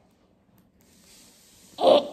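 Near silence, then near the end a short breathy snort of laughter.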